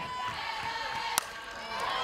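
Ballpark crowd murmur with one sharp crack of a softball bat hitting the pitch a little past halfway.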